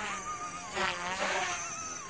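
XK K130 brushless RC helicopter in flight, its motor and rotor whine wavering in pitch as the tail rotor works to hold heading; the whine grows louder for a moment about a second in. The tail rotor howls.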